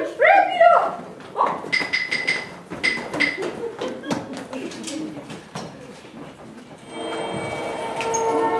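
A child's loud shouted line, then knocks, clicks and footsteps as painted set panels are moved on stage, with a few short high tones in between. Near the end a steady sound of several held tones begins.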